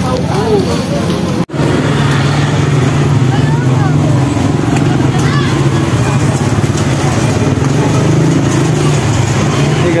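A steady low motor hum with indistinct background voices. The sound cuts out for an instant about one and a half seconds in.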